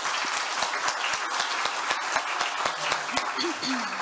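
An audience applauding steadily, with many hands clapping.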